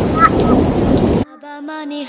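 Garden hose spray nozzle hissing as water sprays onto a wet wooden table and potatoes, with a brief voice just after the start. The spray sound cuts off abruptly just over a second in, replaced by a song sung in Bengali with musical accompaniment.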